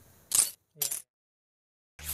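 Two short, hissy swish-clicks about half a second apart: a transition sound effect as the edit moves into the outro.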